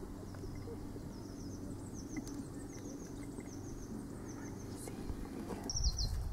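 A small bird singing: short, high chirps in quick groups of two or three, repeated about once a second, with a louder chirp near the end, over a low steady rumble.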